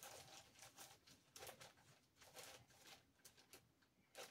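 Near silence with faint, scattered rustles and light clicks of things being handled, as of someone rummaging for a pair of socks.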